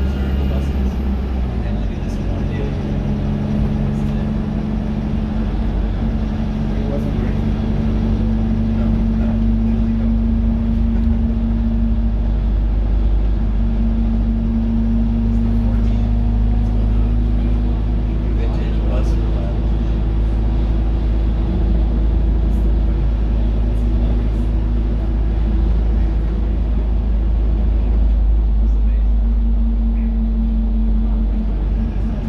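Dennis Dart SLF single-deck bus under way, its rear-mounted engine and drivetrain heard inside the passenger saloon as a loud, steady drone with a held tone that shifts slightly in pitch a few times.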